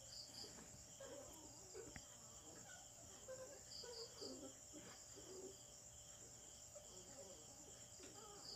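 Near silence with faint insect chirring, like crickets: a steady high trill with a softer, evenly repeating chirp beneath it.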